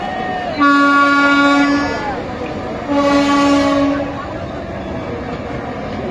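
Bangladesh Railway diesel locomotive sounding its air horn in two steady blasts, each a little over a second long, with a short gap between them.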